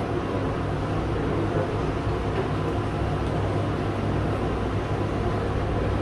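Steady low hum of a room's ventilation or air-conditioning system, even throughout with no distinct events.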